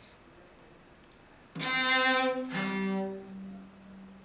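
Cello bowed live: after about a second and a half of quiet, two long notes, the second lower than the first, fading away near the end.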